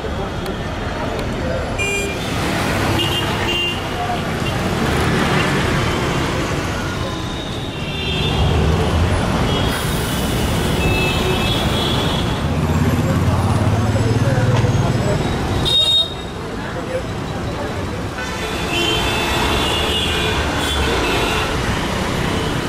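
Busy city street traffic: vehicle engines with a heavier low rumble in the middle that cuts off abruptly about sixteen seconds in, and short car horn toots again and again, over background voices.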